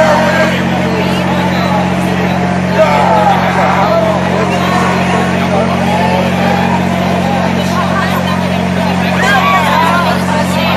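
Steady droning hum from the city's generator-powered light tower, holding one pitch throughout, with indistinct crowd voices talking over it and a single sharp knock about three seconds in.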